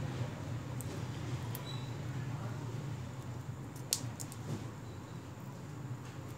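Green cardamom pods being split open between the fingers: a few faint, thin clicks and crackles, the sharpest about four seconds in, over a steady low hum.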